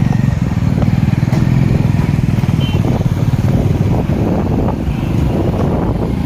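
Motorcycle engine running steadily under way, heard from on the moving bike as a continuous low, pulsing drone.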